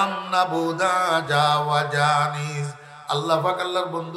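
A man chanting a line of verse in long, drawn-out melodic notes with a wavering pitch, amplified through microphones. There is a brief break about three seconds in before the chant resumes.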